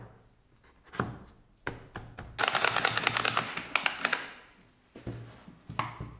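Wooden workpieces knocking and thudding on a workbench as they are handled, several separate knocks, with a rapid clattering run of clicks for about two seconds in the middle.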